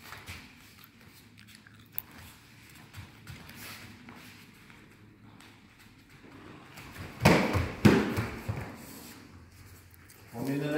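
Taekwondo sparring: light footwork on foam mats, a single sharp click about two seconds in, then about seven seconds in a quick burst of loud thuds and slaps from kicks and feet on the mats and padded protectors. The two loudest hits are about half a second apart.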